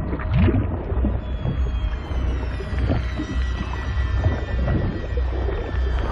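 Underwater sound design for a film: a deep, steady rumble of muffled water movement, with soft swirling water sounds, under a film score of held high tones.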